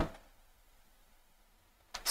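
A pause in a man's speech: his last word trails off just after the start, then near silence until his voice starts again at the very end.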